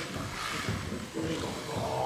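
Indistinct voices echoing in a large, reverberant hall, in short broken phrases.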